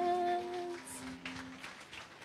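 A woman's singing voice holds the final note of a song, with a lower accompanying note; the note fades out under a second in and the lower one about a second later. Only faint room noise with a few light clicks follows.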